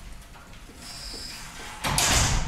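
Dry-erase marker squeaking and scraping across a whiteboard as straight lines are drawn. There is a thin high squeak about a second in and a louder scrape near the end.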